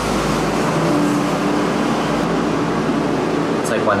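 Street-sweeper vehicle running close by outside, a loud steady rushing noise with a faint hum under it.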